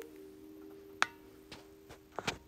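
A single sharp click about a second in, followed by a weaker one, over a faint steady low hum of two close tones.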